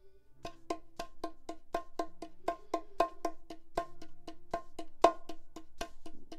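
Bongos played with the fingertips: a steady run of ringing strokes, about four a second, in a repeating left-right, left-right-right, left-right-right grouping. Accented notes are mixed with softer ghost notes, and one accent stands out near the end.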